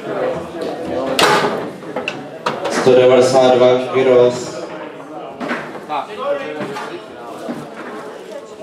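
Sharp knocks and clacks of the ball and plastic players on a Rosengart foosball table during a rally, the loudest about a second in, over people talking in a large hall, with one loud voice near the middle.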